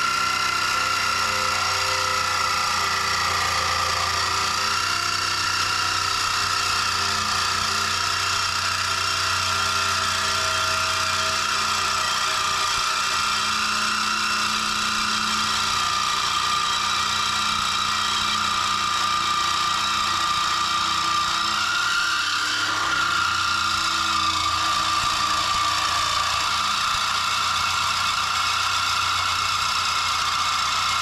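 Cordless DeWalt reciprocating saw cutting through a steel bracket under the truck, its motor whine and the blade rasping through the metal running steadily.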